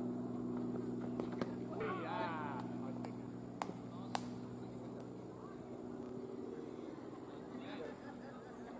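A steady low mechanical hum that eases off about six seconds in. Over it there is one short shout about two seconds in and a few sharp knocks.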